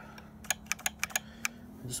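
About six quick sharp clicks in a second's time, from parts of an old McCulloch Mac 1010 chainsaw being handled around its air filter.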